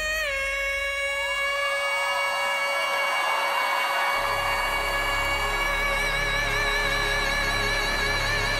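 A male singer holding one long, high sung note with orchestral backing, the note steady at first and then wavering with vibrato from about six seconds in. A deep bass comes in about halfway through.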